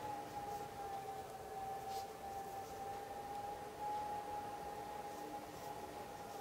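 A steady whine that wavers slightly in pitch, with a faint click about two seconds in.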